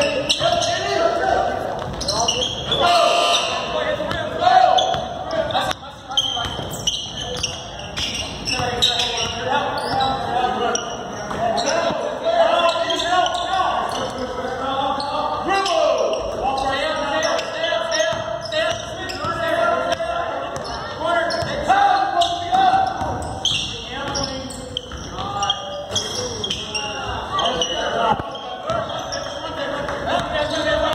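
Basketball being dribbled and bouncing on a hardwood gym floor during a game, in a large echoing gym, with indistinct voices of players and spectators calling out throughout.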